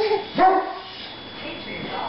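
A baby's short high-pitched vocal calls: one right at the start and a louder one about half a second in that swoops up in pitch, his babbled attempt at yodelling.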